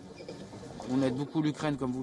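Low room murmur, then a man's voice starting to speak about a second in.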